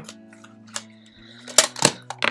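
Small metal watercolour palette tin being shut: a light tap, then two sharp clicks about a quarter of a second apart as the lid snaps closed, over faint background music.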